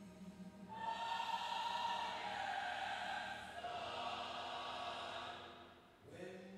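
Sung church music: voices holding long notes that swell about a second in and fade away near the end.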